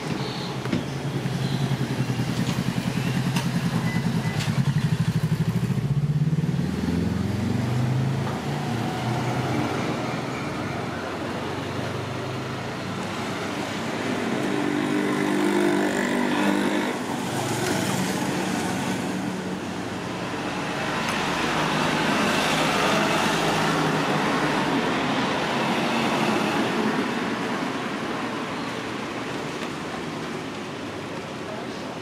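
Motor traffic passing on a street, engines running; one engine note rises in pitch about six to eight seconds in, and another vehicle passes around the middle.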